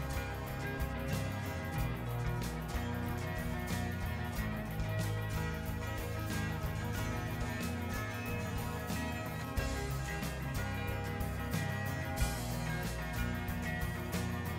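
Steady background music.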